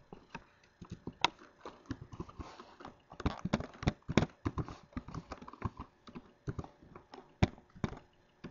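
Typing on a computer keyboard: a run of uneven keystroke clicks, sparse at first and busiest a few seconds in.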